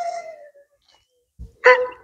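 German wirehaired pointer whining: a high, steady whine that tails off in the first half second, then a short whimper near the end. It is a fearful dog's whine.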